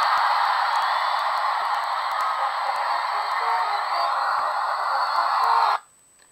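A movie's soundtrack playing through an iPhone 3G's small built-in speaker: a steady, tinny wash of sound with faint music in it. It cuts off suddenly near the end as playback is paused.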